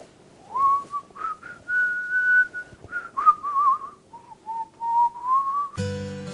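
A man whistling a leisurely tune to himself: a single melody line with a long held note in the middle and a quick warbling run, starting about half a second in and stopping just before the end.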